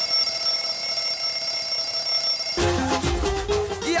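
Alarm clock ringing in one steady, unbroken tone that cuts off abruptly about two and a half seconds in, where music with a bass line starts up.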